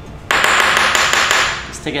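Dry spice seasoning rattling inside a small bottle as it is shaken hard to get the seasoning out. It is a loud, even hiss that starts abruptly about a third of a second in and dies away after about a second and a half.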